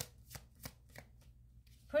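A deck of tarot cards being shuffled by hand: a few faint, separate clicks of card against card in the first second.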